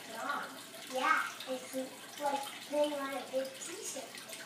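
Girls' voices talking on a television programme, picked up through the room over a steady hiss.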